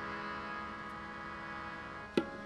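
Harmonium holding a steady sustained chord in a pause of the kirtan singing, with no tabla strokes.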